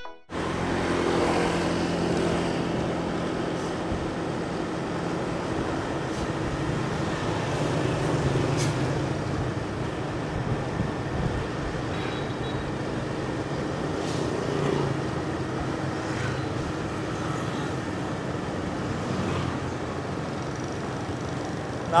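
Steady engine and road noise from riding a motorbike along a city street, with light traffic around.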